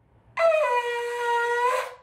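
Ram's-horn shofar blown in one held note of about a second and a half, its pitch dipping slightly just after it starts and then holding steady.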